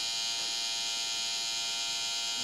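Scalp micropigmentation machine, a corded pen-style tattoo device, buzzing steadily as its needle works pigment into the scalp.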